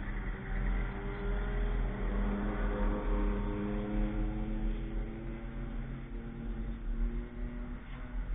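A car's engine running under power as it drives past on a race track, its note clearly heard for several seconds, over a steady low rumble.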